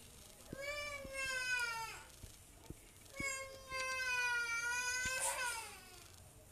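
Two long drawn-out calls at a high, steady pitch, like a cat's meow. The first lasts about a second and a half; the second is longer and falls away at its end.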